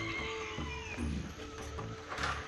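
Background music with held notes and a steady low beat, over which a cow moos once about a second in, its call falling in pitch.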